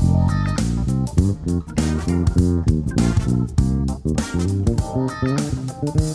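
Music Man StingRay electric bass played fingerstyle: a quick, busy run of short plucked notes with sharp attacks.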